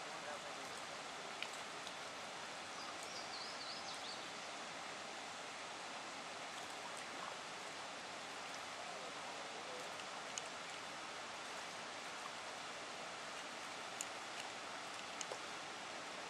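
Steady rushing of white water pouring from a dam spillway onto rocks and into the river. A short run of high chirping calls comes about three seconds in, and a few faint knocks are heard.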